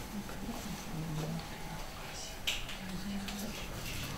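Quiet room with faint, muffled voices and one brief soft click or rustle about halfway through.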